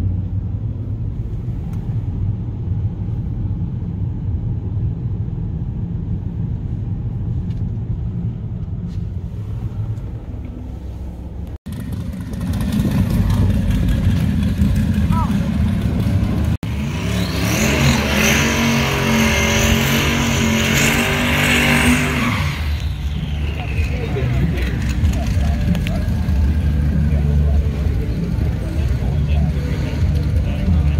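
Low steady rumble of a car driving, heard from inside the cabin. After a cut, a race car engine at a drag strip runs loud and hard for about five seconds from just past the middle and then fades, leaving a steady low engine rumble.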